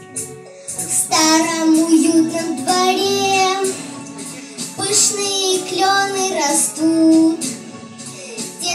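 Children singing over a recorded backing track with a steady bass line, in short sung phrases.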